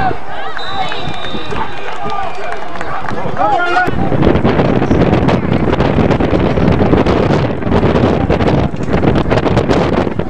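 Spectators shouting at a football game. About four seconds in, a loud, gusty rushing noise of wind buffeting the microphone takes over.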